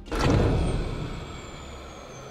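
Power-down sound effect: a sudden rush of noise that fades away over about a second, with a thin high whine slowly falling in pitch.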